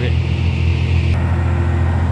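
Steady low engine drone and road noise of heavy trucks climbing a hill, heard at close range from a moving vehicle alongside them.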